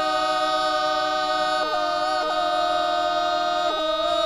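Bulgarian women's folk group singing a cappella in two-part drone style: one voice holds a steady drone note while the melody voices step between close neighbouring pitches, changing about three times.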